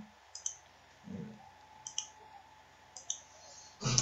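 Computer mouse clicking: quick double clicks about three times, each pair a fraction of a second apart, with a louder cluster of clicks at the end.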